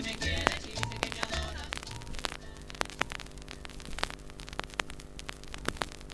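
The end of a cumbia track fading out over about the first two seconds, then the quiet band between tracks of a vinyl LP: surface noise with scattered sharp clicks and crackle over a low steady hum.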